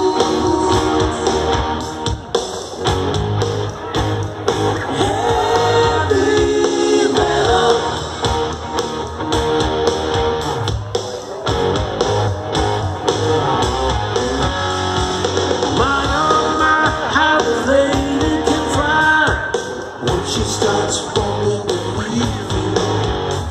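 Live rock band playing through a large outdoor concert PA, heard from within the crowd: a singer over electric guitar, bass and drums, with pitch-bending lines in the middle and near the end.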